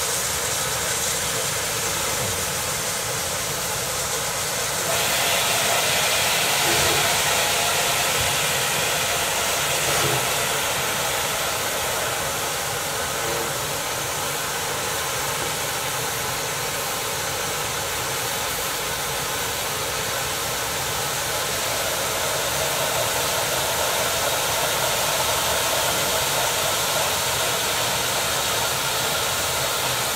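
Rebuilt West Country class steam locomotive 34027 'Taw Valley' hissing steadily as steam escapes from its open cylinder drain cocks while it starts a heavy ten-coach train. The hiss grows louder about five seconds in.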